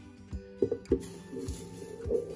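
Background music with a beat; about a second in, granulated sugar starts pouring into a plastic blender jar with a fine hiss, after a couple of light knocks.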